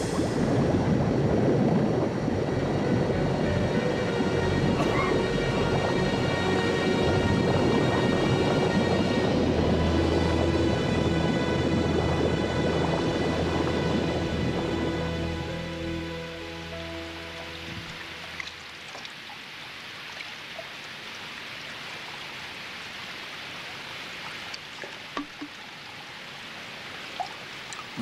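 Water rushing and bubbling through a treatment-plant tank with a low rumble, under film score music. The water sound fades down about halfway through, leaving a quieter hiss with the music.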